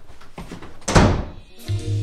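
A white panel door shut hard once, a single loud thud about a second in. Music with a low bass comes in near the end.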